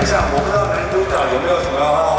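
Voices echoing in a large basketball arena, as background rock music breaks off at the start.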